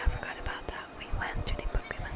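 Soft whispered speech.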